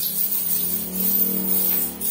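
A big heap of Philippine peso coins jingling and clattering as hands sweep and scoop through it. A low steady drone joins about half a second in and holds.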